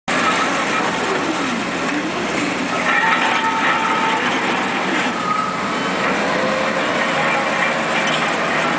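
Marion Model 21 electric shovel working: its electric motors and gearing run with a steady hum and clatter, and whining tones that rise and fall.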